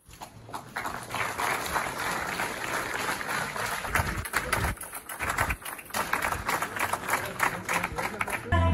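Audience applauding: dense clapping that builds over the first second, then carries on steadily.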